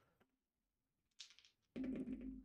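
Three small dice give a brief rattle in the hand, then are thrown onto the playmat near the end, clattering with a run of sharp knocks as they tumble to rest.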